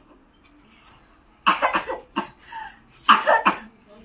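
A person coughing in two short fits about a second and a half apart, each fit a few quick coughs.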